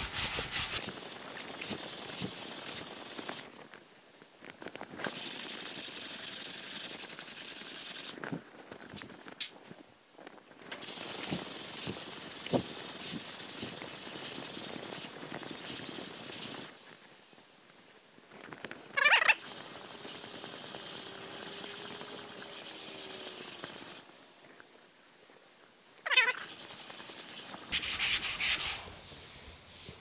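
80-grit sandpaper on a hand sanding block, rubbed back and forth over cured body filler on a truck cab's steel panel. It is working down a high spot to feather the filler in. The sound is a hissing scrape in five runs of a few seconds each, with short pauses between them.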